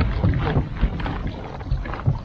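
Wind on the microphone and water lapping against a kayak hull, a steady low rumble with irregular soft splashes.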